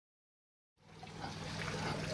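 Silence, then about a second in, water trickling in the pond fades in and grows louder, over a low steady hum.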